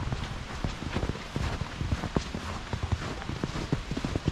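Footsteps walking through fresh, heavy snow: an uneven run of short steps, a few a second.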